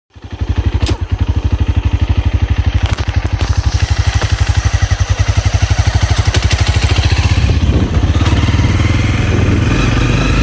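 Motorbike engine running at idle with an even, quick pulsing beat, then pulling away: near the end the beat smooths into a steadier run as the bike gathers speed.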